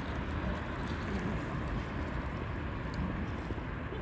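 Wind rumbling on the microphone: a steady low rumble, with a few faint ticks over it.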